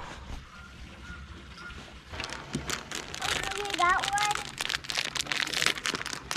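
Rapid crackling and clicking from about two seconds in, like crinkling or handling noise. About halfway through comes a brief high-pitched child's vocal sound.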